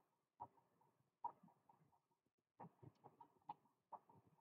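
Near silence with faint animal calls in the background: a string of short, repeated notes that come more thickly in the second half.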